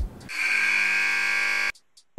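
Basketball arena buzzer sounding as the countdown runs out, signalling time expired. It is one steady blast lasting about a second and a half that cuts off suddenly.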